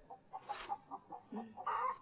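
Chickens clucking quietly in a stable, a few short separate clucks.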